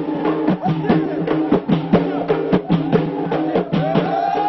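Ahidous, Amazigh folk performance of the Ait Warayn: a line of men chanting together in unison over a beat of sharp percussive strokes, several a second.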